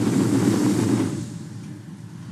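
A long, breathy exhalation blown into a handheld microphone: a loud rush of air that holds for about a second, then fades.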